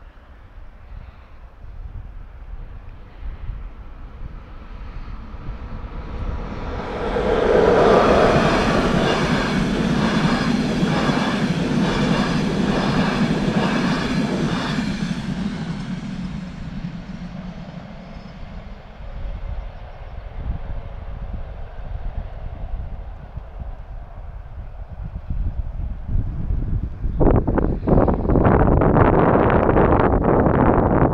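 A train passing over a level crossing: it builds from about six seconds in, its wheels clicking in a steady rhythm over the rail joints, then fades away. Near the end, gusty wind buffets the microphone.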